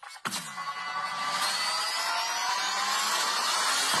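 Synthesized logo-intro sound effect: a sharp hit just after the start with a falling low boom, then a noisy whooshing wash with rising tones that build toward a second hit near the end.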